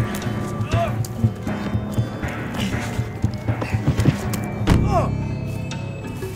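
Animated-film soundtrack: music under a busy layer of sound effects, with many clicks and knocks and two short gliding tones. The loudest event is a heavy thud just under five seconds in, fitting a body falling onto the street.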